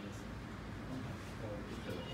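Low voices of people standing around, with a few faint clicks of wooden carrom men being gathered and set in the centre of a carrom board.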